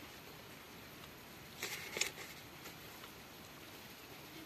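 Faint rustling of a book's paper pages being handled, with a short cluster of soft rustles and clicks about one and a half to two seconds in, over quiet room noise.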